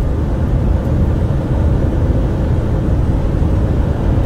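Cab interior of a semi-truck at highway speed: steady low drone of the engine and road noise.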